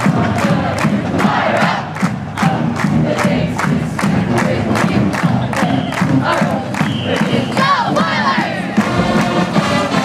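A marching band's drumline beats a steady cadence, about four beats a second, while a crowd of voices cheers, shouts and chants over it. Near the end the band's brass comes in.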